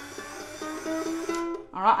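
A motorised Jowoom smart tuner whirring as it turns the tuning peg, while the newly fitted G string of an Ibanez UK C-10 ukulele rings and rises in pitch in small steps as it is wound up, still short of full tension. The motor stops about a second and a half in.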